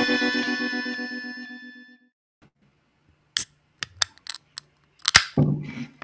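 Intro music ends on a held chord that fades out over about two seconds. After a moment of silence come a string of sharp clicks and knocks, a beer can being handled right at the microphone, and a short hiss near the end.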